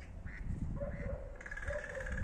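Faint, drawn-out duck calls from the lake over a low rumble, with the calls strongest in the second half.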